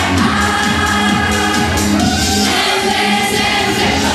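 A group of young men and women singing a song together from lyric sheets, loud and steady.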